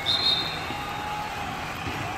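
A short, high referee's whistle blast just after the start, fading within about half a second, over the steady background hum of the pitch.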